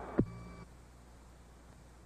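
A radio transmission cutting off: one sharp click about a quarter second in, with a short buzz that stops about half a second in. Faint steady hiss and low hum follow.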